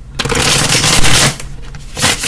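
A deck of cards being riffle-shuffled: a rapid, dense crackle of cards flicking together, starting just after the start and lasting about a second.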